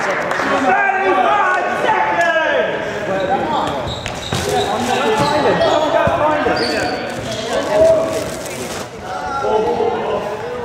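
Athletic shoes squeaking and thudding on a wooden sports-hall floor as players run and cut, with voices echoing in the large hall.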